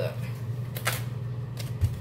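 Paper wrapper of a stick of butter crinkling and crackling as it is handled and unwrapped, with one sharp crackle about a second in and a light thump near the end, over a steady low hum.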